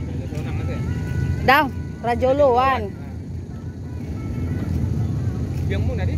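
A steady low rumble under a few spoken words, with a faint electronic tune in the first second and a half.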